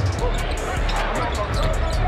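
A basketball being dribbled on a hardwood court, heard as short sharp ticks, over a steady music bed.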